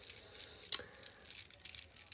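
Chunky beads on a beaded necklace clicking lightly against each other as it is handled. A few scattered clicks are heard over faint room noise.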